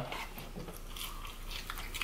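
Faint chewing and crunching of fried food, with small scattered crunches.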